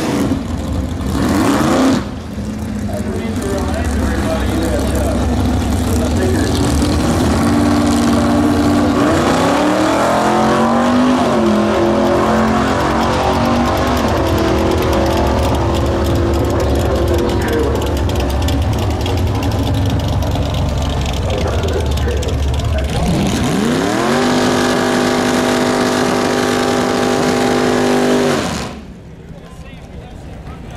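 Vintage muscle car engines accelerating hard down a drag strip, their pitch climbing and stepping through gear changes. Near the end an engine rises to a high, steady note for several seconds, then drops away suddenly.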